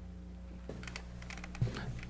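Scattered light clicks and taps over a steady low electrical hum.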